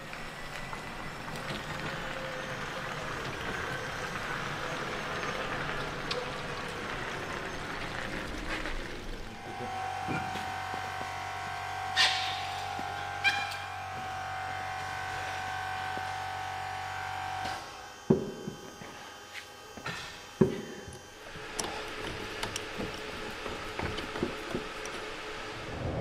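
Workshop sounds of a wheel change: a steady mechanical hum for about eight seconds in the middle, with a few sharp metallic knocks and clunks of tools and wheels.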